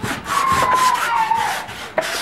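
Sandpaper rubbed by hand over the wooden top of a chest of drawers, quick back-and-forth rasping strokes about five a second, prepping the old finish for paint.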